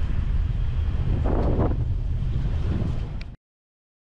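Wind buffeting the camera microphone aboard a boat under way, a steady low rumble with a brief rush of noise about a second and a half in. It cuts off suddenly near the end.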